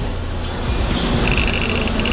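Rapid, evenly spaced ticking from a tablet wheel-spinner app as its on-screen wheel spins, starting about a second in, played through the tablet's speaker over a low steady rumble.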